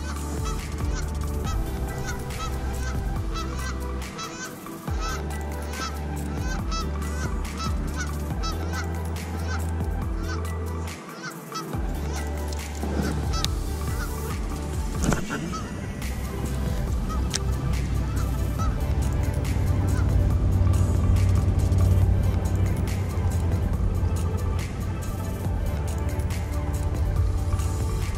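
Geese honking repeatedly through the first half, over background music with a steady bass line.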